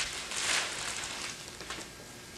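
Clear plastic vacuum-bag film rustling and crinkling as it is handled and smoothed over a wing on the bench. The rustle swells about half a second in, then tails off.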